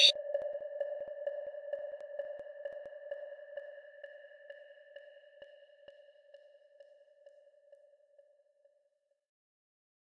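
A single bell-like tone rings on and slowly fades away over about nine seconds, with two fainter, higher overtones dying out a little sooner.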